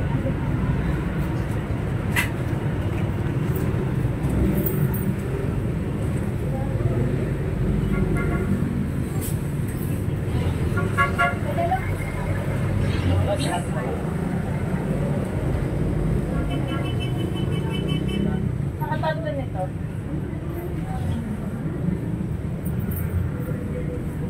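Busy shop and street ambience: a steady low traffic rumble with background voices and a few short pitched toots, like vehicle horns.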